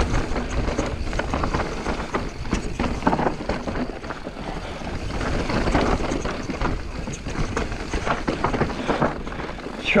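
Mountain bike on thick downhill tyres descending a rough, rocky dirt trail: continuous rattling and clattering with many sharp knocks as the bike is bumped about, over a steady rumble of tyres on the dirt.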